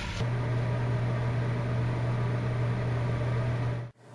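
A steady low machine hum with an even hiss over it. It starts a moment in and cuts off suddenly near the end.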